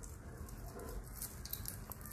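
A run of faint small metallic clicks and clinks from a replica Leatherman Tread metal-link multitool bracelet as its links and clasp are handled while it is fastened around a wrist.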